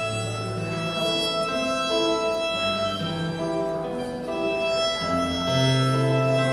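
Violin playing a melody of held notes, starting right at the beginning, with low sustained bass notes underneath.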